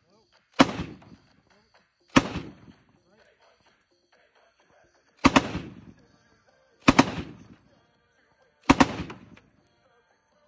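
An M1918 Browning Automatic Rifle in .30-06 fired standing at 100 yards: five loud shots spaced one and a half to three seconds apart, each echoing briefly.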